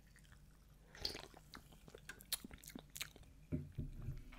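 Faint mouth sounds of a person sipping and swallowing a soft drink: a scatter of small wet clicks and swallows.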